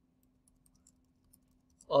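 Faint typing on a computer keyboard: a scattering of light key clicks over a low steady hum, then a spoken word near the end.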